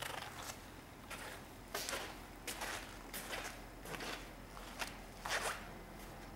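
Irregular scuffs and rustles, about eight in six seconds, from a person moving about with a handheld camera: footsteps with clothing rustle and handling noise.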